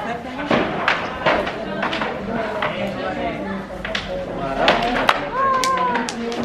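People talking in a busy pedestrian street, with a raised voice near the end and several short knocks scattered through.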